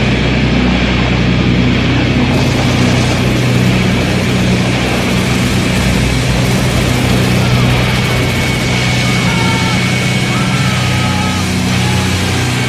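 A steady, loud low drone like running engines under a wash of noise, with a few short wavering tones near the end.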